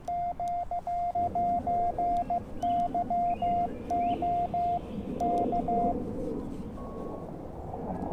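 Morse code sidetone from a YouKits HB-1B QRP CW transceiver: one steady tone keyed in dots and dashes on a paddle, stopping about six seconds in. Then comes receiver hiss with a short steady tone near the end, someone tuning up on the band.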